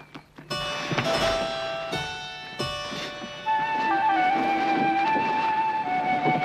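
Background music of a television drama's score, coming in about half a second in with a few struck notes and then carrying a held melody line.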